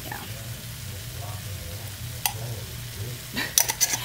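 Edamame pods and chopped garlic sizzling in oil in a nonstick frying pan, over a steady low hum. A single click comes about two seconds in, and a quick run of clicks and knocks near the end.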